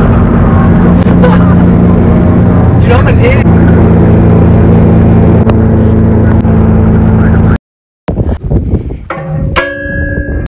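Loud, steady low droning inside a moving car's cabin for about seven and a half seconds, with a few brief bits of voice, then it cuts off abruptly. After that come a few light clicks and a short ringing tone near the end.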